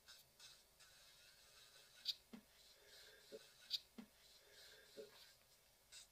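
Very faint scratching of an electric nail file's small cuticle bit working across a fingernail's cuticle to lift it, with a few soft ticks.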